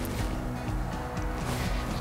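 Background music with steady, held low notes, with no voice over it.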